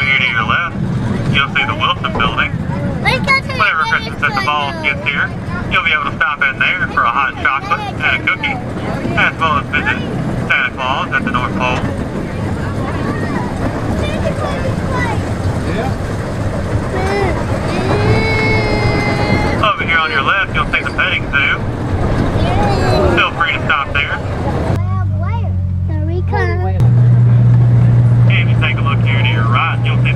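Park tour train running, a steady low engine hum under indistinct voices of passengers. About 27 seconds in, the low drone becomes much louder and steadier.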